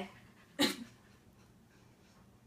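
A dog makes one short, sharp vocal sound about half a second in.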